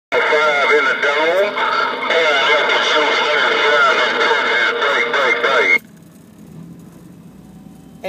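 A voice coming in over a Galaxy radio transceiver's speaker, with steady tones laid over it, cutting off abruptly about six seconds in and leaving low hiss.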